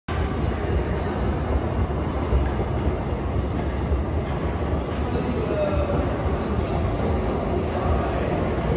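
Steady low rumble of an underground metro station, heard while riding a long escalator down.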